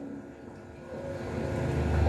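A low engine rumble that grows steadily louder from about a second in.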